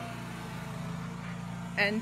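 Lawn mower engine running steadily outside while cutting grass, a constant low hum.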